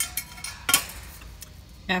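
Metal pipe being handled and knocked: a sharp clink at the start and a louder knock about two-thirds of a second in.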